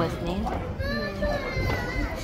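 Young children's voices chattering and calling out, with a few high, sliding calls about halfway through.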